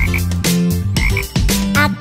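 Several frog croaks in a row over a bouncy children's-song backing track.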